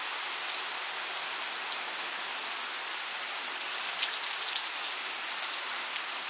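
Rain falling steadily, an even hiss, with sharper individual drop ticks coming through more in the second half.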